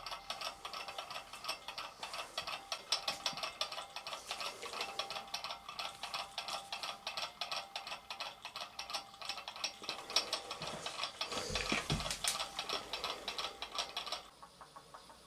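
Magnetic stir bar spinning in a glassware water bath on a stirring hotplate, rattling against the glass as a fast, continuous ticking.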